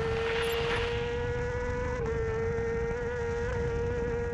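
Superstock racing motorcycle engine held at high revs, a steady high-pitched buzz whose pitch barely changes, with a slight dip about two seconds in.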